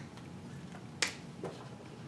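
Whiteboard marker being handled: one sharp click about a second in, then a fainter tick about half a second later.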